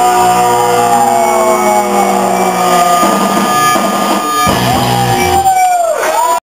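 Live punk rock band at the end of a song: electric guitars ring out on long held notes that slide slowly down in pitch over a loud sustained wash, with a short break about four and a half seconds in before another held note rises and falls.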